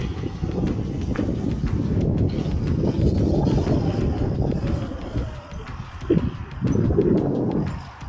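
Mountain bike descending a dirt singletrack: a steady rumble of tyres rolling over dirt, with many quick clicks and rattles from the bike. It eases off briefly a little past halfway and again near the end.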